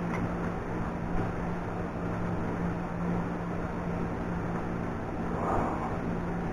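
Electric box fan running: a steady low hum with a constant rush of air.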